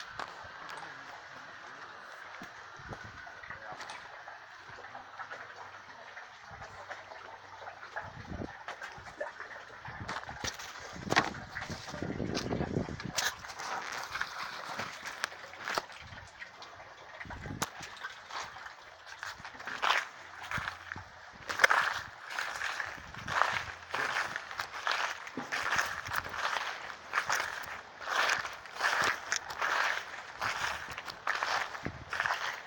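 Footsteps at an even walking pace, one step a little under a second apart, over the last third, after a stretch of steady faint background noise with a few scattered knocks.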